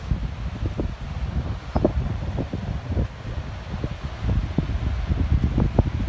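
Wind buffeting a phone's microphone outdoors: a steady low rumble with irregular gusty bumps.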